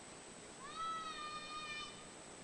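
A dog gives one long whine about half a second in, rising quickly at the start and then held at a steady high pitch until near the end.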